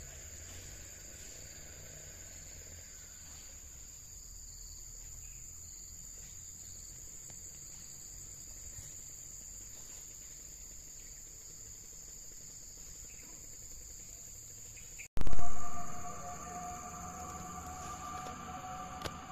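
Steady high-pitched drone of insects in the plantation, over a low rumble. About three-quarters of the way through, the sound cuts out for an instant and a loud burst follows, fading over about a second, after which two steady lower tones join the drone.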